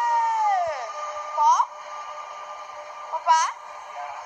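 High-pitched vocal calls, one long call sliding down in pitch near the start and two short rising whoops later, over the steady whine of a passing electric train.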